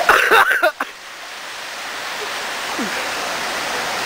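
A voice calls out briefly at the start, then a steady rushing of running water at the pond's edge grows gradually louder.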